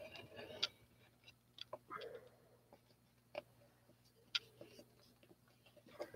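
Faint, scattered clicks and light rustles from a plastic mixing cup being handled, about five sharp ticks spread over several seconds.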